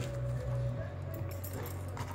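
A dog mouthing and licking an egg on a tile floor, faint small wet sounds over a steady low hum.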